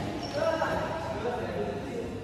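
Badminton players' voices calling out across an indoor hall court during a doubles game.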